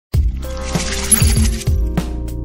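Music for a logo intro starts suddenly with a hit, then carries held notes and low beats. A bright, glittering shimmer rises over it for about the first second and a half.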